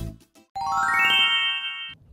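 A quick rising run of bell-like chime notes, entering one after another and ringing together before cutting off suddenly just before the end, after the last plucked note of guitar music.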